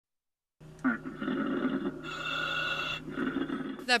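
Surface-supplied diver's breathing inside his helmet, heard over the dive intercom: a run of breaths about a second each over a steady hum.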